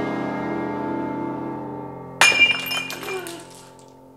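A held music chord fades out, then about two seconds in a bowl smashes with a sharp crash, followed by a brief scatter of clinking pieces.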